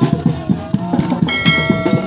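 Procession drum band playing a quick, steady drumbeat, with a bright bell-like ringing that starts a little after a second in and holds to the end.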